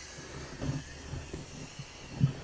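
Compressed air hissing faintly through an air chuck into an inner tube, puffing it up just a little so it holds in place inside the tire.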